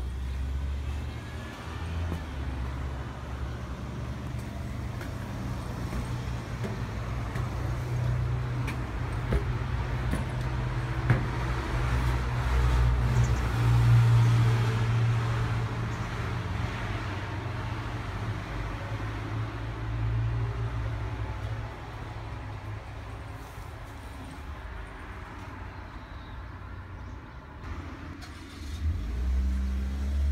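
Road traffic going by over a steady low rumble, one vehicle swelling up and fading away around the middle.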